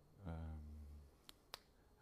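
A man's low, held hesitation hum while he searches for a word, then, about a second in, two sharp clicks a quarter of a second apart.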